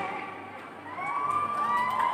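Audience cheering as the dance music fades out, with long, rising whooping shouts starting about a second in.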